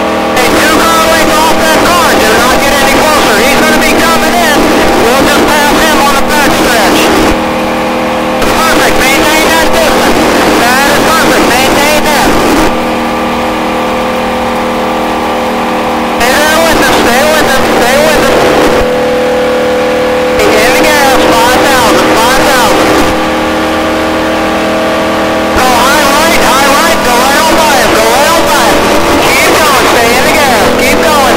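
V8 stock car engine heard from inside the cabin, running hard at a steady pitch as the car laps the oval. An indistinct voice comes in over it in four stretches of a few seconds each, with a rise in noise each time.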